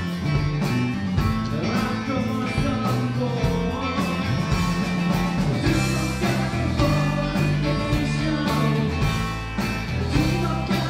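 A rock band playing live, with distorted electric guitars, bass and drums keeping a steady beat, and a lead singer's voice over them.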